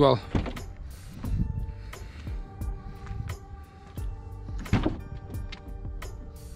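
Audi A5 Sportback's driver's door being opened, its latch releasing with a short clunk about three-quarters of the way through, over background music.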